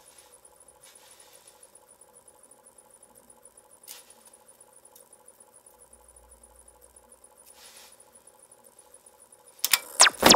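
Quiet room tone with a faint steady hum, a single soft click about four seconds in and a soft rustle later. Just before the end a loud scratchy sound effect with rapidly sweeping pitch cuts in.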